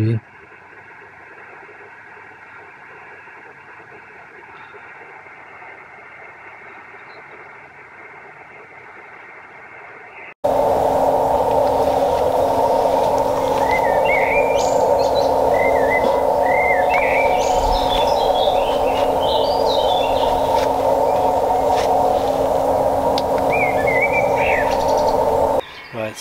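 Amateur radio transceiver receiving the QO-100 satellite downlink in SSB: receiver hiss with several faint steady tones, the beacons coming in weakly. About ten seconds in it gives way to a much louder, narrow band of filtered receiver noise with a steady low tone, and birds singing over it.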